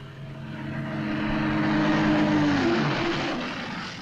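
A diesel bus engine running as the bus drives up to a stop, getting louder as it approaches. The engine note drops and settles about three seconds in as the bus slows and halts.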